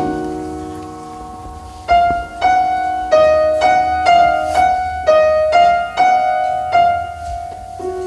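Grand piano played solo: a chord rings out and fades for about two seconds, then a slow line of single notes follows, struck about twice a second, each ringing on as the next is played.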